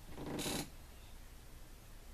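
A short breathy exhale, lasting about half a second at the start, then faint room tone.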